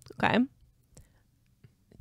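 A single short spoken 'okay', then a pause of near silence broken by a couple of faint clicks.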